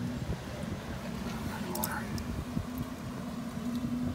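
A steady low rumble with a constant hum from a motor vehicle running nearby, with a faint voice briefly near the middle.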